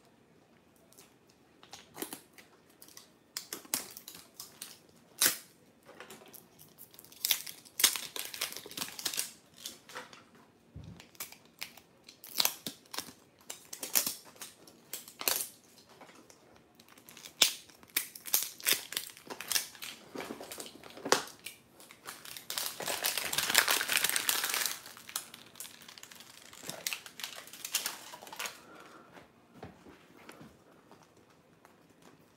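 Plastic film crinkling and hard plastic clicking as hands peel open a Mini Brands surprise ball, in short bursts with a longer, louder stretch of crinkling near the end.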